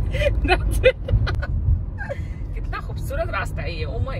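Steady low road and engine rumble inside the cabin of a moving car, with a person's voice talking over it in short stretches.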